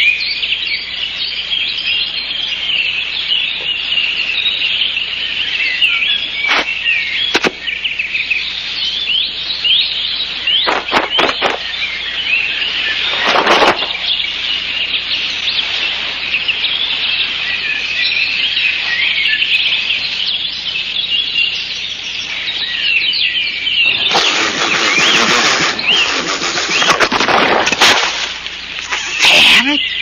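Small birds chirping and singing continuously in many short high calls, with a few brief knocks in the middle and a burst of rushing noise lasting about four seconds near the end.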